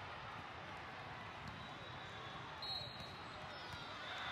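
Indoor volleyball tournament hall din: scattered ball hits and bounces and the chatter of many voices in a large reverberant hall, with a brief high squeak about two and a half seconds in.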